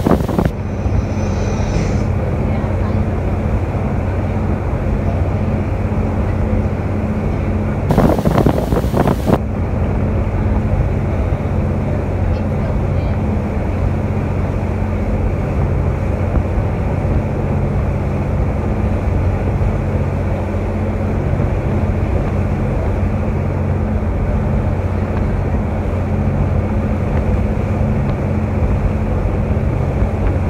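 A ferry's engine runs with a steady low hum under the rush of wind and water as the boat moves across open harbour water, with wind buffeting the microphone. A brief louder burst of noise comes about eight seconds in.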